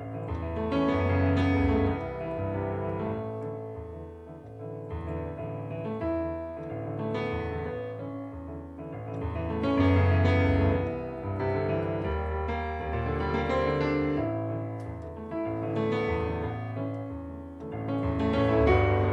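Solo digital stage piano playing a relaxed, bossa nova-feel original piece in 7/8 with negative harmony: chords over a moving bass line, swelling and easing in phrases.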